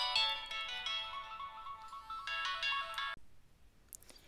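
Phone ringtone: a melody of quick stepped notes that cuts off abruptly about three seconds in.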